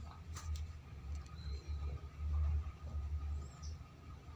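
Socket wrench turning the clutch spring bolts on a Honda TMX 125 clutch: two light metallic clicks within the first second, then dull low handling bumps and a few faint squeaks.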